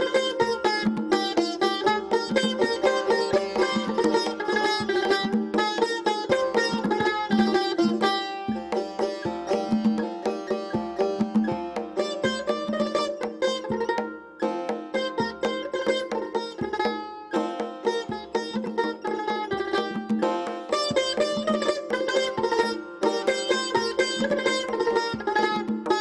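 Persian tar played with a plectrum in quick runs of plucked notes, with a tombak goblet drum keeping a steady beat under it in a traditional Persian duet. The music dips briefly about fourteen seconds in.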